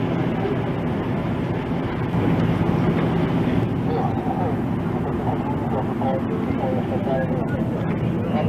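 A steady engine rumble with indistinct voices over it.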